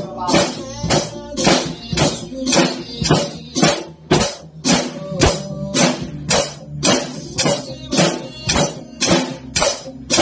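Acoustic drum kit played to a steady beat, its cymbal and drum hits coming at an even pace over a recorded song with guitar and vocals.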